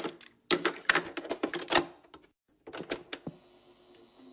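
Bursts of rapid mechanical clicking and clattering, broken by brief silences. Near the end, quiet music with soft low notes takes over.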